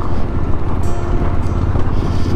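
Suzuki V-Strom motorcycle riding on a gravel road: a steady engine drone with wind rushing over the microphone.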